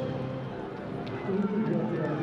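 Voices talking.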